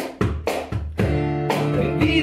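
Acoustic guitar strummed in a steady rhythm, about four strokes a second, with the chord ringing on from about a second in.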